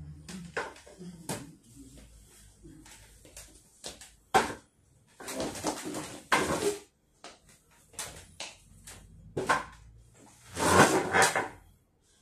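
Irregular knocks, bumps and scrapes from a person moving about and handling a chair on a hard floor, with the longest and loudest scrape near the end.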